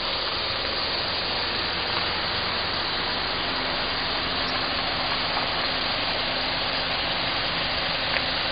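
Mitsubishi saloon's engine idling steadily nearby, with a steady hiss over it.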